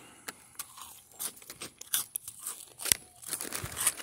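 Gloved hand rummaging in a plastic bag of dry multigrain cereal rings: scattered crinkles of the bag and small, irregular crunchy clicks of the cereal pieces, with one sharper click near the end.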